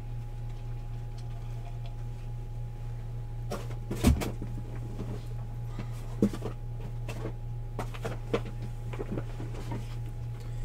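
Steady low electrical hum, with a scattering of clicks and knocks from a few seconds in; the loudest is a thump about four seconds in.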